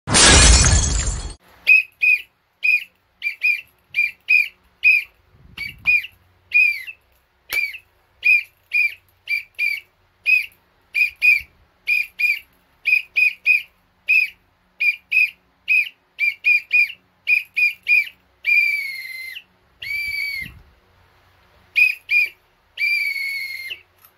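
A plastic whistle blown in a long run of short sharp blasts, about two a second, then a few longer blasts near the end whose pitch drops as they tail off, blown like a referee's end-of-match whistle. It is preceded at the very start by a loud crash-like noise burst lasting about a second.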